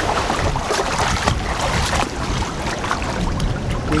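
Continuous splashing of a child swimming hard across a small pool, his arms and kicking feet churning the water in many quick, irregular splashes.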